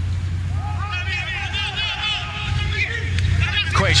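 Several overlapping voices of players calling and shouting on the pitch during open play, over a steady low hum from the stadium broadcast feed, with a louder falling shout near the end.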